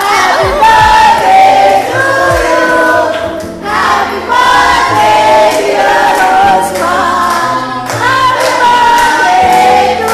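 Music with a group of voices singing a melody over a bass line, with a steady beat of sharp strokes.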